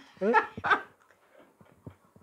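A man's laughter: two short high-pitched laughs in the first second, then faint small clicks.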